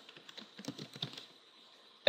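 Faint computer-keyboard typing: a quick run of about eight keystrokes as a password is typed in, stopping a little past a second in.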